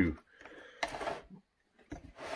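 Brief handling noise, a short scrape about a second in, as the chainsaw is turned on the wooden workbench.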